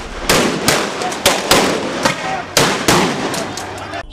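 A rapid string of about six sharp gunshots within three seconds, each ringing off the surrounding buildings: riot police firing shotguns.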